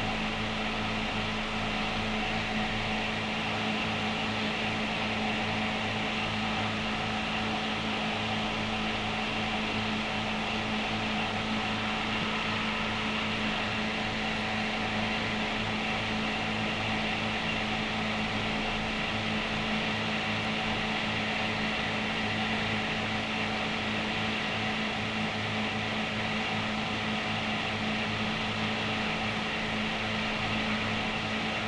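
Steady hum and hiss with no other events: the background noise of an old 1950 film soundtrack between passages of narration.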